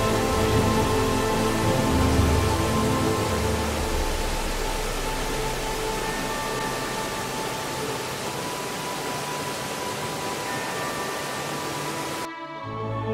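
Background music of slow, held tones over a steady rushing of falling water. The water noise cuts off suddenly near the end, leaving the music alone.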